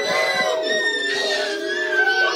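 Children's voices singing, holding long high notes that glide slowly in pitch.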